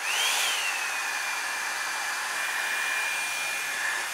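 Revlon One Step dryer brush switched on at its low setting: the motor spins up with a whine that rises, then dips and settles about a second in, and the fan runs on steadily with a rush of air.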